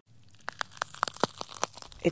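A quick, uneven run of sharp crackling clicks, about a dozen over a second and a half, starting about half a second in.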